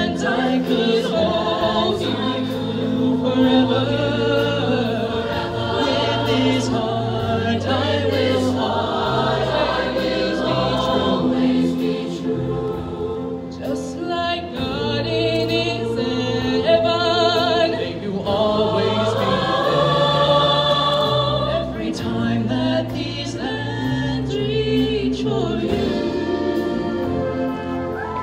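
Show choir singing in harmony, holding long chords, with a solo voice at the microphone; a strong vibrato stands out about halfway through.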